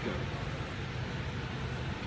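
Steady background hum with an even hiss, with no distinct events.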